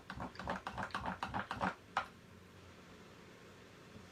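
A quick, uneven run of light clicks and taps, about seven a second, that stops about two seconds in, leaving faint room tone.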